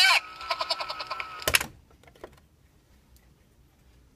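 The Bugs Bunny talking alarm clock's recorded voice plays through its small speaker over a steady tone, finishing its message. It stops with a sharp click about a second and a half in, followed by a couple of faint clicks.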